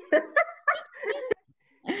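A woman's short, excited, yelping vocal exclamations, then a brief gap and a burst of laughter near the end.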